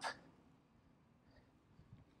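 Near silence, with only the tail of a spoken word at the very start.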